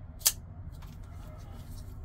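SITIVIEN ST-143 folding knife flipped open: the blade swings out on its caged ball-bearing pivot and snaps into place with one sharp metallic click about a quarter second in, the liner lock engaging.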